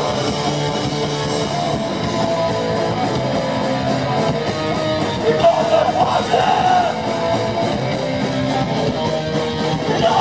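Rock band playing live at full volume: electric guitars, bass and drums, with a steady, even cymbal beat from about two seconds in and a sung vocal line around the middle.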